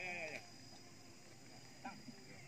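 A short, wavering vocal call in the first half-second, then faint background.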